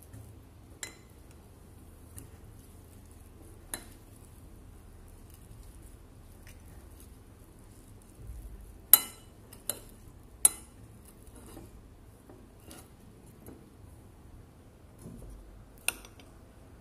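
Metal spoon clinking and tapping against a ceramic plate while picking up pieces of fried pork. There are about seven sharp clinks, spread out, the loudest a pair about nine and ten and a half seconds in.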